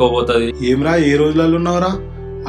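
Background music with a steady low drone under a man's voice, drawn out in one long held phrase whose pitch rises slightly and which stops abruptly at the end.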